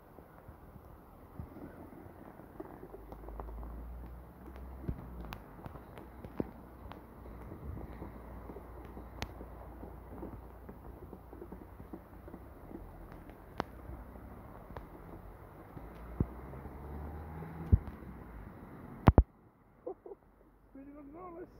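Heavy rain falling on a flooded road, a steady hiss with scattered sharp ticks. A low rumble swells from about three seconds in and fades by about ten. Two loud knocks come just before the end, and then the sound almost drops out.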